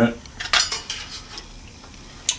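Hard objects being moved about and set down on a workbench: a quick run of clicks and clinks about half a second in, then faint handling noise.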